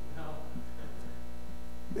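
Steady electrical mains hum, an even low drone with faint overtones stacked above it, running unchanged through a gap in the speech.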